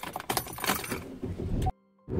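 Keys jangling and clicking with irregular rattling, cut off abruptly near the end.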